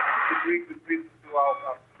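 Speech only: a voice talking in short bursts over a narrow, telephone-like audio line.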